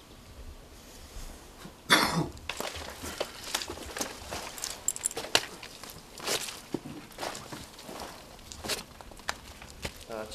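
Footsteps on earth and dry brush, with leaves and twigs rustling and crackling at an irregular pace. The loudest rustle comes about two seconds in.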